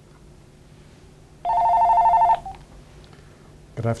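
Office desk telephone ringing once: a two-tone electronic ring lasting about a second, starting about a second and a half in.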